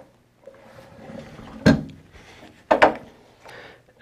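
Two short knocks about a second apart, then a fainter one, from hands working the controls of a round column drill-mill fitted with a quill wheel.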